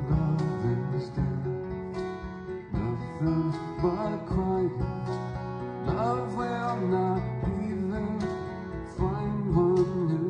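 A live band plays an instrumental passage of a folk song, led by plucked acoustic guitar.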